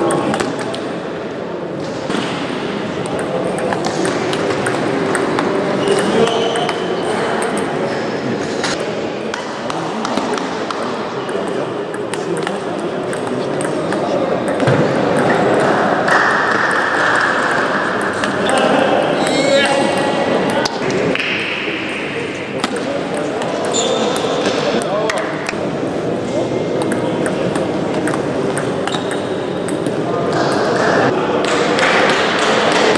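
Table tennis ball being hit back and forth in rallies: repeated sharp clicks of the ball on the rackets and the table, with voices chattering throughout.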